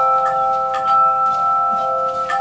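Tubular handchimes played by a chime choir: several chimes struck together in chords, their clear tones ringing on and overlapping as fresh notes are struck over the held ones.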